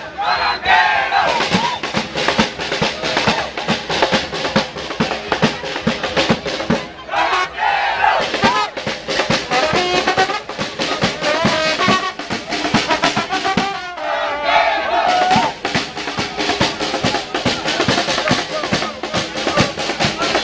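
A street band of drums and a trombone playing a fast, steady rhythm amid a crowd, with voices rising over the music at times.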